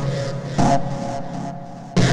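Synthesizer improvisation using the 'Erazzor' preset of LMMS's TripleOscillator, played from a keyboard. A low chord with a sharp, bright attack hits about half a second in and fades over the next second, and the next chord strikes right at the end.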